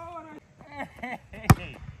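Excited laughing and exclaiming voices, then one sharp basketball bounce on the hard court about a second and a half in, the loudest sound.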